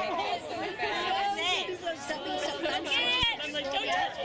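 Spectators chattering, several voices talking over one another close by.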